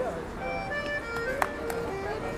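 Accordion playing held chords and notes over a busy street background, with voices of people passing and talking. There is a sharp click about a second and a half in, with fainter ones around it.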